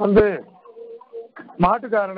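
A man's voice speaking in drawn-out, sing-song phrases, with a faint steady low tone in the short pause between them.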